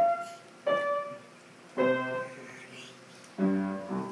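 Upright piano played by a child: two single notes, then two fuller, lower chords, each struck and left to die away. The last chord, about three and a half seconds in, is the final chord of the piece.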